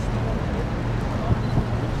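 Wind buffeting the microphone over a steady low engine drone from vessels on the river.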